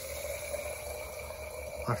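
Fuel injectors on a homemade flow bench held open, spraying test fluid into glass jars with a steady hiss and a faint steady tone underneath, bleeding off the 58 psi rail pressure.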